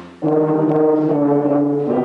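Solo rotary-valve tuba playing a melody: one note fades out, a short gap for breath, then a new note starts about a quarter second in and is held steadily until near the end.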